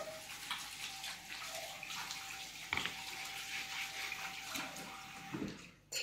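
Kitchen faucet running into a stainless steel sink as hands are rinsed under it, a steady hiss with a single knock about halfway through. The water sound cuts off just before the end.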